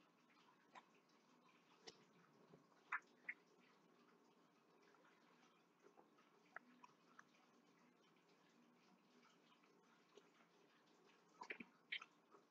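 Near silence, with a few faint, scattered taps and scrapes of a wooden spoon stirring thick brownie batter in a plastic bowl.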